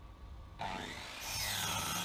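Electric compound miter saw starting up about half a second in, then its spinning blade cutting into a wooden board, the cut loudest near the end.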